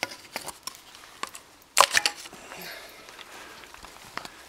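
Knocks and clicks of handling as a golf ball is loaded into the barrel of a PVC potato gun, with one louder knock a little under two seconds in.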